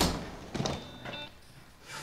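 A wooden interior door being pushed open: a sharp click as it starts to move, then a couple of short squeaks.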